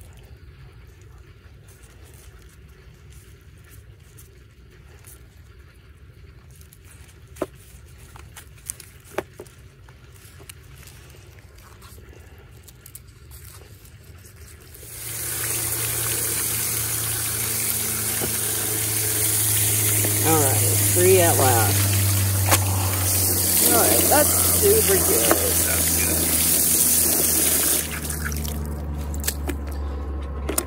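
Garden hose spraying water onto a wet tie-dyed cotton onesie in a plastic tray, rinsing out the dye. It starts abruptly about halfway in and runs loud and steady for some thirteen seconds. Before that there is only quiet handling of the fabric with a few small clicks.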